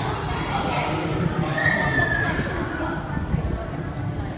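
Indistinct voices of people talking, with a short high squeal that falls slightly in pitch about one and a half seconds in.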